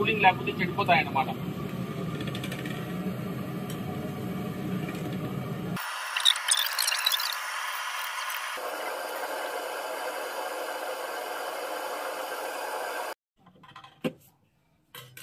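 Steady hiss of the LPG gas burner under a large aluminium pot of heating almond milk, with a voice briefly at the start. The hiss changes character abruptly twice and cuts off shortly before the end.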